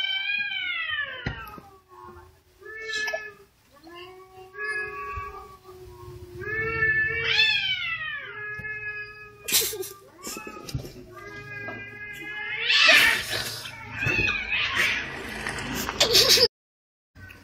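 Domestic cats caterwauling in mating season: a run of long, wavering yowls whose pitch rises and falls, traded back and forth as they face off. Near the end the cries turn louder and harsher.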